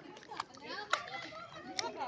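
Children's voices talking and playing, with a few short sharp clicks among them.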